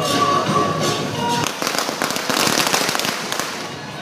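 A string of firecrackers going off in a dense run of rapid crackling pops, starting about a second and a half in and lasting about two seconds. Music plays underneath.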